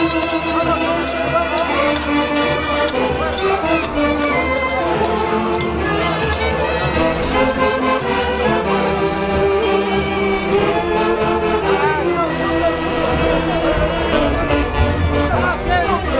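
Folk orchestra from Huancayo playing tunantada dance music: a steady, continuous melody of several pitched instruments.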